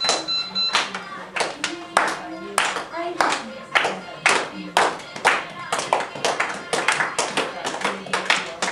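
A group clapping hands in a steady rhythm of about two claps a second to keep the beat for giddha, a Punjabi folk dance, with the claps coming thicker in the second half.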